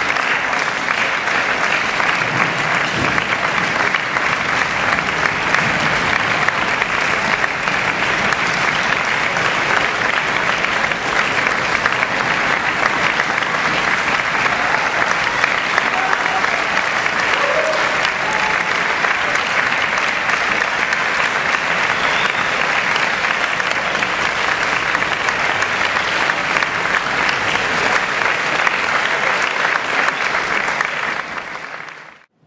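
Audience applauding steadily, a dense unbroken patter of many hands clapping.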